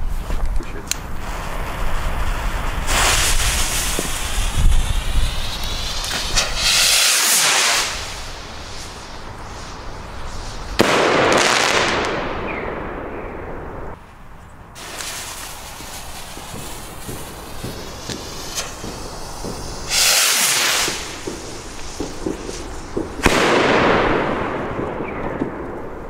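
Pyroland Populum ball-head bomb rockets fired one after another: loud rushing whooshes and shell bursts, several starting suddenly. There are about four main events, around 3, 11, 20 and 23 seconds in, some falling in pitch as they fade.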